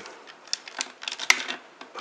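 Hard plastic parts of a Transformers Arms Micron Ultra Magnus toy clicking and rattling as the legs are worked apart, with one sharp click a little past halfway.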